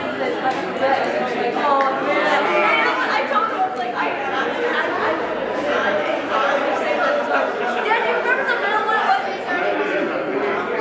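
Many people talking at once in a large room: a steady murmur of overlapping conversations in which no single voice can be made out.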